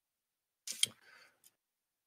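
Near silence, broken a little under a second in by a brief click, with a fainter tick about half a second later.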